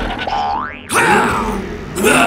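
Edited-in cartoon sound effects: a quick rising boing-like glide that cuts off suddenly just before a second in, followed by another comic effect with falling tones.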